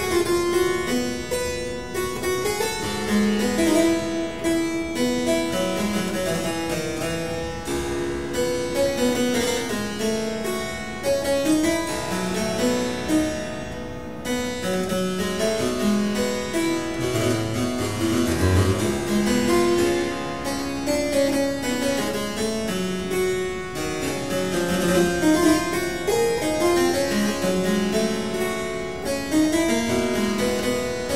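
Solo harpsichord playing a Baroque keyboard piece: a dense flow of plucked notes and broken chords, with a few deep bass notes about two-thirds of the way in.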